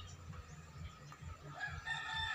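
A rooster crowing: one long held call that begins about a second and a half in, over faint low background noise.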